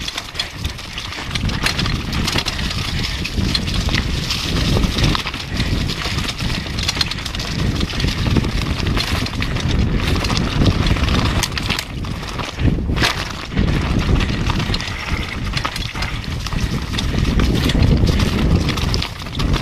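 Downhill mountain bike descending a rocky trail at speed: a continuous rattling clatter of tyres, frame and drivetrain over loose stones, with a steady low rumble underneath.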